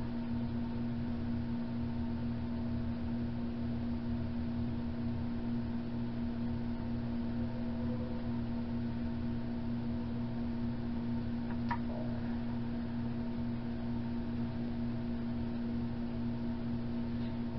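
A steady low electrical hum, one unchanging tone with fainter overtones, with a single small click about twelve seconds in as small pieces are handled.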